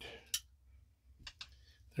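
A few small clicks of a CR2032 coin-cell battery being lifted out of a plastic thermometer's battery compartment. One sharp click comes about a third of a second in, then a few fainter ones just past the middle.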